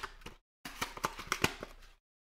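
Trading cards and plastic card holders being handled on a table: soft rustling with several sharp clicks and taps, broken by a short gap about half a second in.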